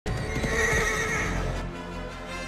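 A horse whinnying over background music, the whinny strongest within the first second and fading out about one and a half seconds in.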